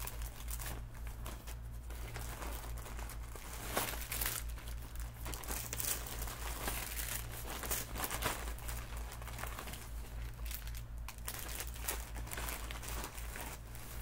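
A crinkly bag being rummaged through by hand, with irregular rustling and sharper crackles now and then.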